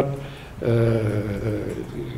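A man's drawn-out hesitation sound, a level-pitched "ehh" held for about a second after a short pause.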